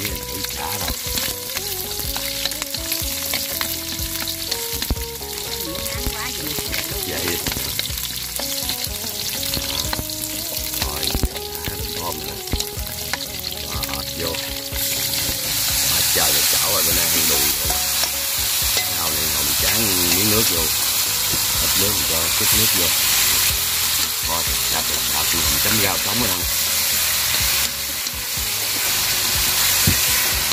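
Lemongrass sizzling in hot oil in a wok, stirred with chopsticks. About halfway through, turmeric-marinated frog pieces go into the wok: the sizzling turns louder and brighter and goes on under spatula stirring.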